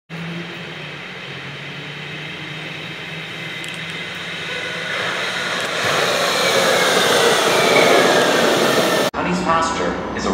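Alstom Citadis Spirit light-rail train approaching and pulling into the platform, its rolling noise growing steadily louder over about eight seconds, with a high whine that falls in pitch as it slows. The sound cuts off abruptly near the end, and a voice follows.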